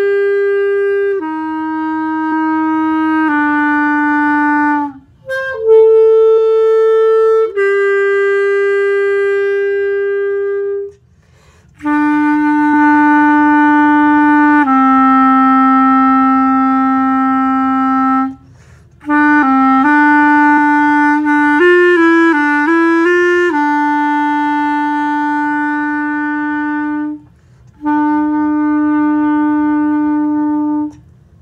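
Solo B-flat clarinet playing a slow melody of long held notes, with short breaks for breath between phrases. There is a quicker run of notes a little past the middle.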